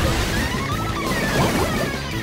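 Upbeat cartoon background music led by guitar, with a water-splash sound effect.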